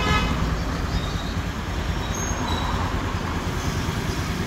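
First-generation Honda Vision scooter's fuel-injected single-cylinder engine idling steadily, a low even rumble.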